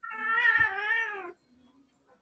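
An animal's single long call, rising slightly and then falling, that stops about a second and a half in.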